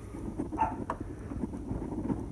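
Low wind rumble on the microphone of a handheld camera carried outdoors, with a brief faint sound about half a second in and a short click just before the one-second mark.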